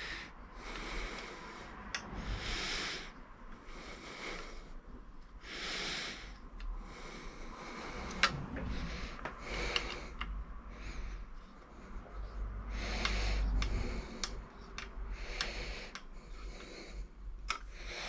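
A person's breathing close to the microphone, a soft breath every second or two, with scattered small clicks from handling screws and an Allen key.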